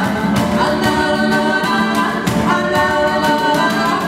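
Live Brazilian popular music: singing with a handheld microphone over a struck cajón beat, bass guitar and acoustic guitar.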